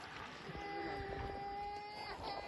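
A small child crying faintly: one long, steady wail that starts about half a second in and holds its pitch.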